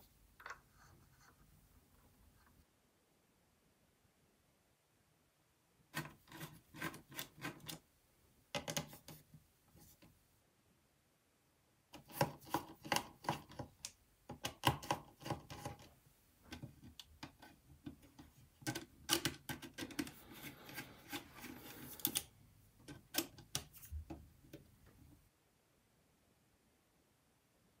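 Close clicks and scrapes of hand tools: a precision screwdriver taken from a plastic tool kit and turned in the small T8 Torx screws inside a Mac mini's base. They come in two stretches with silent gaps between.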